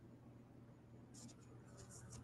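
Near silence: room tone with a low hum, and a few faint scratchy rustles in the second half.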